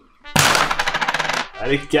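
A sudden, loud, rapid rattle of evenly spaced clicks lasting about a second, followed by a short spoken exclamation.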